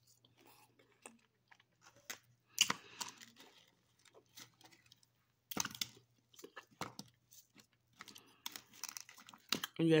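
A person chewing frozen jello-coated grapes, with irregular crunching and mouth clicks and sharper crunches about two and a half and five and a half seconds in.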